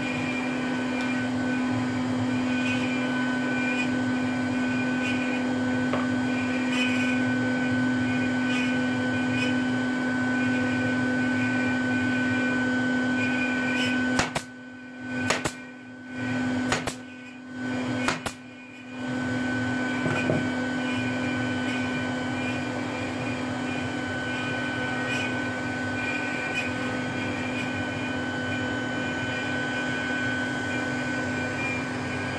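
Pneumatic nail gun firing several sharp shots in quick succession about halfway through, fixing a small wooden panel down onto the CNC router bed. A steady machine hum with a constant tone runs underneath.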